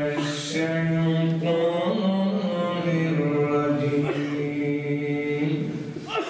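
A man chanting melodically into a microphone, holding long notes of about a second each and gliding from one pitch to the next, breaking off near the end.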